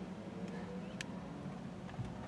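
Faint room tone: a low steady hum with a single light click about a second in.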